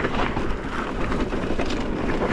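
A mountain bike riding over a loose, stony trail: a steady rumble of tyres on gravel with scattered clicks and rattles from stones and the bike, and wind buffeting the microphone.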